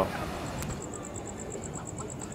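Outdoor night ambience: a steady background hiss of distant noise, joined about half a second in by a high, rapid pulsing chirp of about ten pulses a second.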